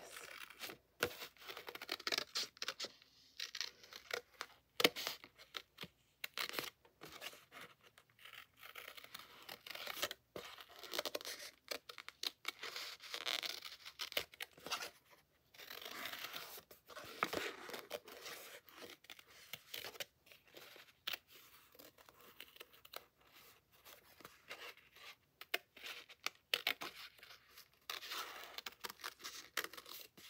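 Scissors cutting out a printed waterslide decal from its paper sheet in many short, irregular snips.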